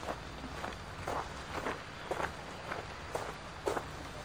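Footsteps walking on a gravel path, an even pace of about two steps a second.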